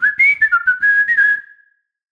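A person whistling a short tune of several notes that step up and down, with audible breath, ending about a second and a half in on a held note that fades out.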